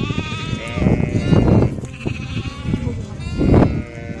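Sheep bleating in a penned flock: a drawn-out call at the start and a shorter one about two seconds in. Louder bursts of rough noise come about a second in and again near the end.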